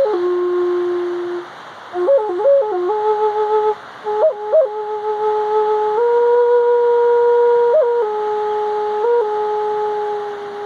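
A Native American-style flute playing a slow melody of long held notes, ornamented with quick flicks up to a higher note, with two short breaks for breath in the first half.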